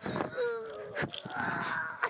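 A woman letting out one long moaning cry, a held note that sinks a little, followed by a breathy rasp.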